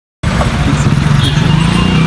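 Motorcycle engine running steadily at idle close by, with a constant low hum under a noisy wash; it begins abruptly a moment in.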